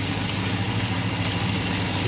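Steady low hum with an even hiss over it, from a running kitchen appliance at the stove while pasta is stirred in a frying pan.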